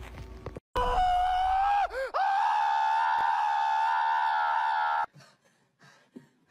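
A person's long, high-pitched held scream. It starts suddenly, breaks once with a quick downward swoop after about a second, then holds steady for about three more seconds and cuts off abruptly.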